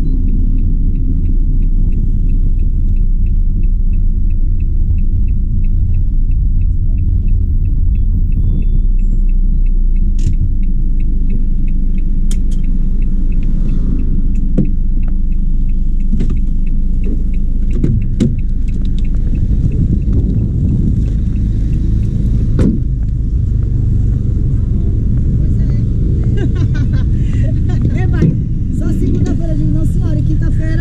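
Van engine running, heard from inside the cab as a steady low rumble. A regular faint ticking, about two ticks a second, runs through the first half, typical of the turn indicator, and a few knocks come later.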